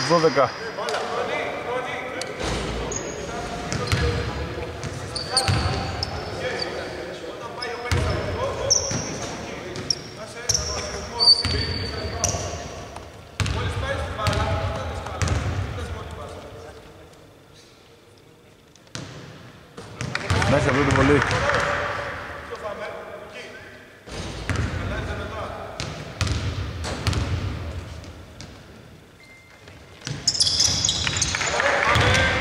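Live basketball play on a hardwood court: the ball bouncing, sneakers squeaking in short high chirps during the first half, and players calling out, all echoing in a large, mostly empty arena. Play goes quiet for a few seconds past the middle before picking up again.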